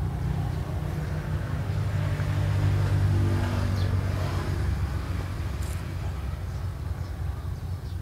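A low, steady engine hum, growing louder from about two seconds in and easing off after about four seconds.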